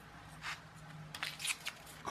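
Faint, scattered small clicks and scrapes of a steel ruler, a straightened paperclip wire and a pen being handled on a workbench, over a low faint hum.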